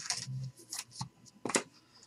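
Trading cards sliding and scraping against one another as they are handled, several short rustles spread through the moment.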